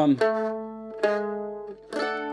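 Eight-string mandolin plucked twice, about a second apart, each note or chord left to ring and fade, the second cut off shortly before the end. It shows the single moving note that steps from one chord to the next in the pattern.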